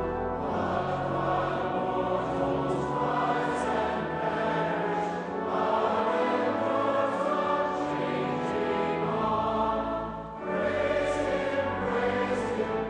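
A congregation singing a hymn together, with sustained low accompaniment. The singing goes in long held phrases, with a short breath break about ten seconds in.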